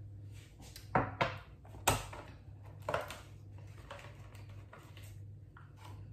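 Kitchenware being handled: a few sharp clinks and knocks, the loudest about two seconds in, over a steady low hum.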